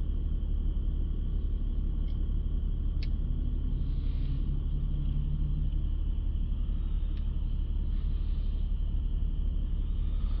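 Steady low rumble inside a car's cabin, unchanging throughout, with a few faint clicks about two, three and seven seconds in.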